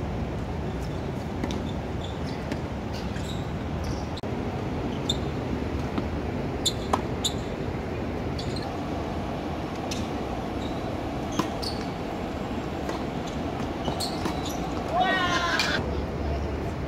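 Tennis balls struck by racquets and bouncing on a hard court: scattered sharp pops, a quick cluster of them in the middle, over a steady background hum. A voice calls out near the end.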